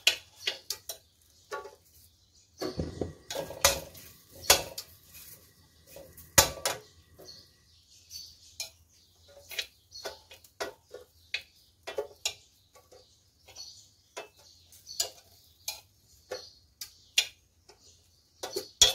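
Metal tongs and a steel spatula clicking and knocking against a dry steel wok as roasted red chilies are picked out from among shallots and garlic, in irregular clinks with a few louder knocks in the first half.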